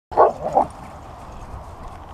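A husky at play giving two short, loud bark-like calls in quick succession right at the start, then falling quiet.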